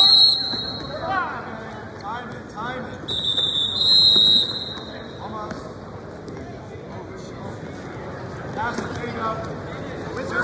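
Referee's whistle on a wrestling mat: a short, loud blast right at the start that restarts the bout from the neutral position, then a longer steady blast about three seconds in.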